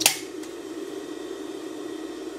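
Industrial serger (overlock machine) motor still running steadily after being switched off, coasting down slowly, as industrial motors do. A sharp click at the very start.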